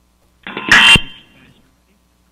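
A brief, loud burst of buzzy, distorted tone on the meeting's call-in telephone line, heard over the sound system about half a second in. It lasts about a second and ends in a sharp thump, as the finished caller's line is dropped.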